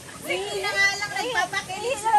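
A woman's high-pitched laughing and squealing, wordless, over the steady rush of a shallow stream.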